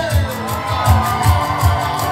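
Live band music: guitars and keyboard over a steady low drum beat about three times a second, just after a sung line ends.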